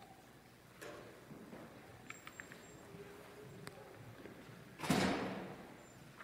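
Quiet church sanctuary with a few faint clicks and knocks as people move about between songs, then a short, loud rush of noise close to the microphone about five seconds in that fades within a second.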